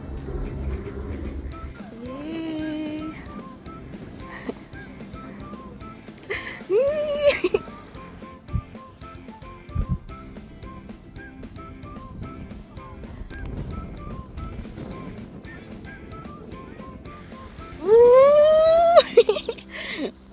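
A woman's voice giving three long rising whoops of delight, about two seconds in, about seven seconds in, and loudest near the end, over faint, evenly spaced soft notes.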